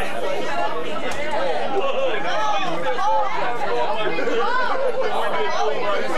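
Several people talking at once: overlapping conversation in a small group, with no single voice standing out.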